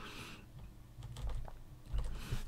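A few faint computer keyboard clicks about a second in, stepping through moves on a digital chessboard, after a soft breath.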